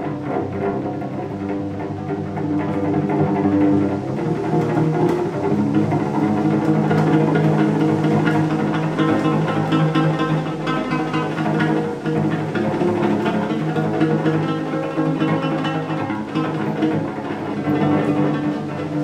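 Solo cello playing long, held low notes with rich overtones, the pitch shifting every few seconds.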